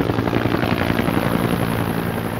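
Helicopter running overhead, with steady rotor and engine noise.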